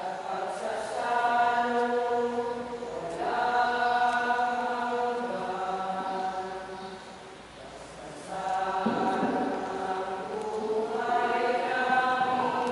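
Voices singing a slow sacred hymn or chant in long held notes, phrase after phrase, with a brief softer pause about two-thirds of the way through.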